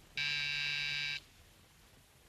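Electric doorbell buzzer rung once, a steady buzz lasting about a second.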